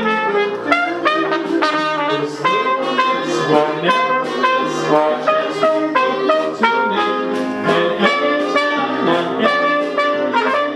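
Small band playing brisk jazz-style music led by trumpet and trombone, the notes changing several times a second.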